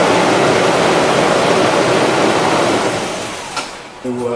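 Toyota Tacoma's 4.0-litre V6 engine just started and running loud and steady at a raised idle, then dropping off over the last second. It has been started after an oil change to circulate the fresh oil.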